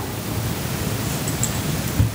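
Steady hiss of broad background noise, with no speech over it.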